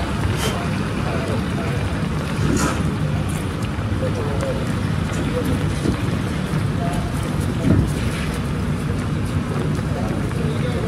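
Street noise on a wet road: steady traffic rumble and wind on the microphone, with scattered distant voices. A car drives past close by in the first second.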